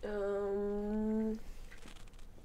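A person humming one steady, level-pitched 'mmm' for about a second and a half, then stopping: a thinking hum while working out an answer.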